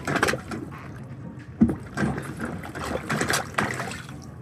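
Rubber plunger working a clogged refrigerated display-case drain: uneven sucking and splashing of water in the drain, with one sharp knock about a second and a half in. The plunging is breaking up plastic tags that block the drain line.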